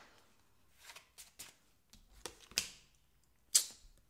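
Tarot cards being shuffled by hand: a few soft card clicks and a swish, then one sharper card snap near the end.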